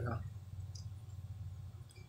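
A pause in a man's talk: his last word trails off at the start, then a low steady hum with a couple of faint clicks just under a second in.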